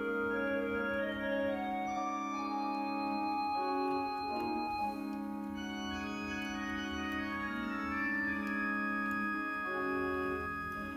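Church organ playing sustained chords over a held bass, the harmony moving slowly with a clear chord change about five seconds in.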